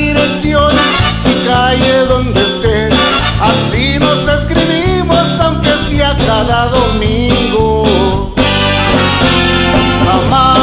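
A live band plays a Latin song with drums, bass and trumpets, and a man sings over it through a microphone.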